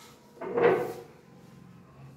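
A small plastic chair scraping briefly on a tiled floor as someone sits down on it, about half a second in.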